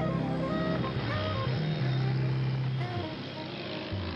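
Street traffic with motor scooter engines running, a steady wash of engine and road noise, under soft background music.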